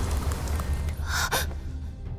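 A woman's short, sharp gasp about a second in, over a steady low rumble.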